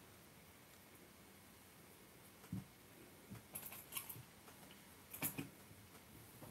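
Near silence with a few faint clicks and taps from hands working a crochet hook through cotton yarn, the loudest about five seconds in.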